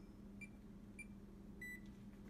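Electronic wall-oven keypad beeping as the buttons are pressed to set a 450-degree preheat: three short high beeps about half a second apart, then one longer, slightly lower beep near the end.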